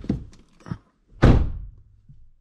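A car door shutting with one loud, heavy thunk about a second in, heard from inside the cabin, after a few small knocks and rustles.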